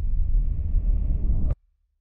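Deep low rumble of a logo sound effect, cutting off abruptly about one and a half seconds in.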